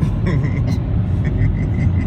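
Car road noise heard from inside the cabin: a steady low rumble of tyres and engine while driving on the highway.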